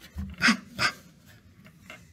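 A woman sounding out the letter P as a phonics sound: three short, breathy 'p' puffs in quick succession.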